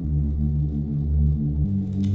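Electronic dance music in a beatless passage: low sustained synthesizer chords, one chord changing to the next about a second and a half in.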